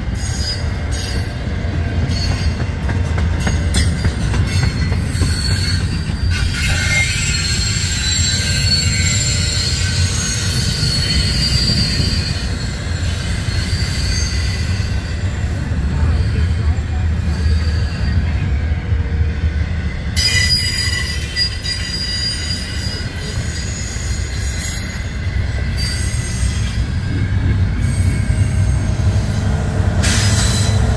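Double-stack intermodal freight train's loaded well cars rolling past at close range: a loud, steady rumble of steel wheels on rail, with high-pitched wheel squeal that comes and goes.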